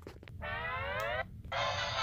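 Synthesized intro jingle for a title card: a rising tone for just under a second, then, about one and a half seconds in, a steady held chord.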